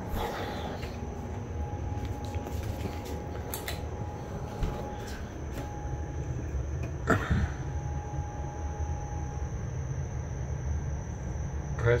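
Steady low indoor hum with a faint high whine over it, broken by a few short knocks, the loudest about seven seconds in.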